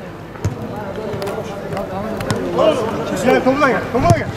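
A football thudding once about half a second in, then players' voices calling out across the pitch in the second half.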